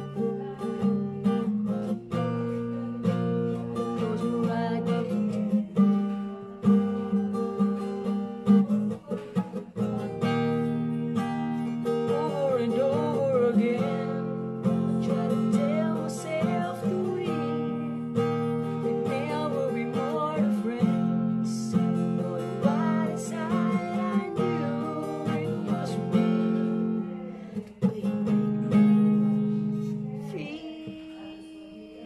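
Acoustic guitar with a capo playing a slow ballad's chords. A man's singing voice joins about ten seconds in and carries a sung line until shortly before the end, when the guitar continues alone.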